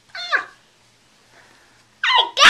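A toddler's short, high laughing squeal that falls in pitch, lasting under half a second near the start.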